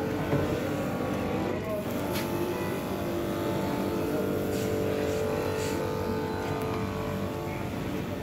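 An engine running steadily, with a continuous low drone.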